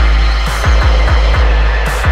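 Hardtek (free tekno) DJ mix: a rapid, steady kick drum over a continuous deep bass, with short bursts of high hiss about half a second in and near the end.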